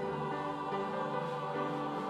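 Church choir singing a Christmas cantata, accompanied by a small string orchestra of violins and cello. A new chord comes in right at the start, and the music moves on in slow, held notes.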